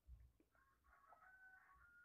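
A rooster crowing faintly in the distance, one crow lasting about a second and a half, in otherwise near silence.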